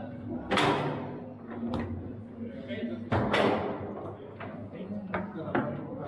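Foosball table impacts: two loud, sharp bangs of the ball or rods striking the table, about half a second in and about three seconds in, with smaller knocks between them, over background chatter in the hall.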